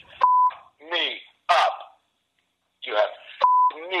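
Censor bleep, a steady single-pitch tone, sounding twice, near the start and about three and a half seconds in, blanking out expletives in a man's angry, shouted rant.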